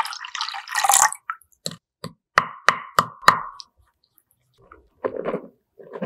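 Lukewarm water poured from a measuring jug into a glass bowl of milk and eggs for about a second, followed by a quick run of about five sharp clicks or taps. Near the end comes a short soft rustle as flour starts pouring into the bowl.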